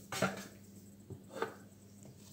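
Spatula stirring a very foamy chocolate génoise batter in a steel Thermomix bowl: a few soft, squishy strokes, the loudest just after the start. The foaminess of the batter can be heard.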